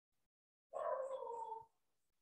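A single animal call about a second long, starting just under a second in and sliding slightly down in pitch.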